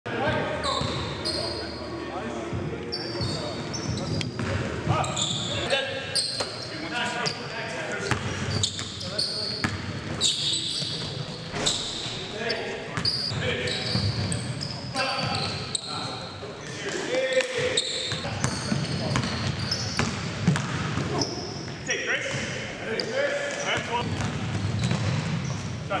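Live basketball game in an indoor gym: sneakers squeaking on the hardwood floor, the ball bouncing, and players calling out to each other.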